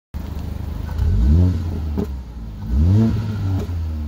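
Mercedes-AMG CLA 45's turbocharged 2.0-litre four-cylinder idling through its stock exhaust with both resonators in place, revved twice: a quick blip about a second in and another near three seconds, each rising and falling in pitch, with a short sharp crack after the first.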